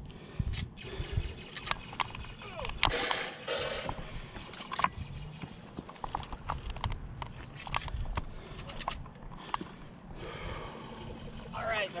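Irregular knocks, scuffs and rustles of a person moving over rock with gear, and low rumbling handling noise from a body-worn camera.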